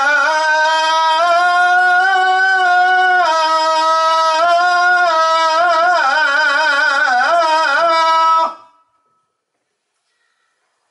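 A man's unaccompanied voice chanting Islamic devotional verse through a microphone, in long held notes with ornamented melismatic turns. The chant breaks off about eight and a half seconds in.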